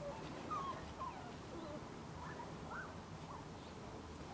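A puppy whimpering faintly: several short, high whines spread over a few seconds.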